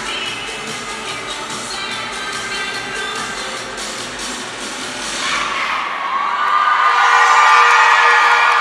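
Cheer routine music with a steady beat that stops about six seconds in, as the crowd's cheering and shouting swells to its loudest near the end, marking the routine's finish.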